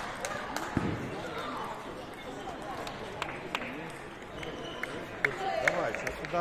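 Table tennis balls clicking sharply against tables and bats at irregular intervals from play on other tables, over a background murmur of voices.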